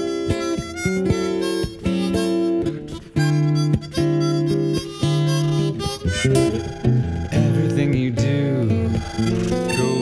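Instrumental passage of harmonica over plucked acoustic guitar. From about six seconds in, the harmonica bends its notes up and down.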